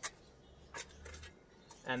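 Steel spade working loose garden soil, covering a filled hole: two short crunches about a second apart, with fainter scrapes after.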